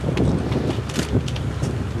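Outdoor background noise: a rumbling noise haze over a steady low hum, with a few faint ticks.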